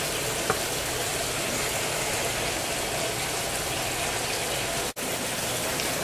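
Steady, even background hiss with no words, with a single light click about half a second in and a sudden brief gap near the end where the recording is cut.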